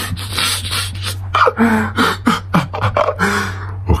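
A man's breathy, wheezing laughter: a rapid run of hissing exhalations with a few short voiced giggles between them, over a steady low hum.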